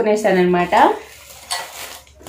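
A woman's voice for the first second, then plastic packaging crinkling as it is handled near the end.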